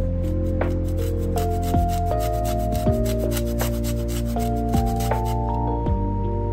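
Lemon zest being grated on a handheld metal grater: quick, repeated scraping strokes of the peel against the blades, which stop shortly before the end.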